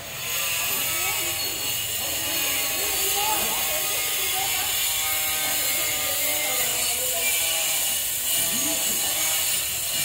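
A loud, steady hiss with a faint high whine in it, starting suddenly under a second in, with voices faintly beneath it.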